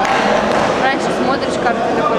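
Several people calling out and shouting over a steady murmur of voices in a large sports hall.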